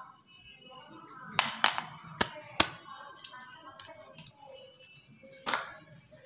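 Scattered sharp clicks and knocks, about seven in all, of hard plastic and metal parts being handled as a power sprayer's small water pump is taken apart by hand.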